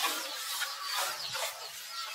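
Short, high-pitched chirping calls, several within two seconds, each falling briefly in pitch, over a steady outdoor hiss.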